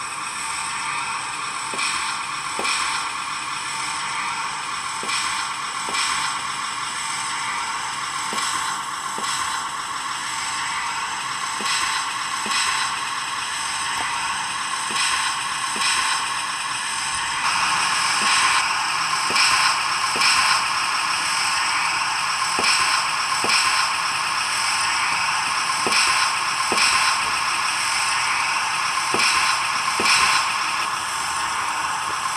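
The DCC sound decoder of an OO gauge model Plasser & Theurer 09-3X tamping machine plays its engine and working sounds through the model's small speaker: a steady drone with a sharp click roughly once a second. About halfway through, the sound gets louder and busier.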